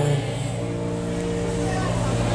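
Live band holding a steady sustained chord on keyboards between the sung lines of a pop ballad. The singer's held note ends just after the start.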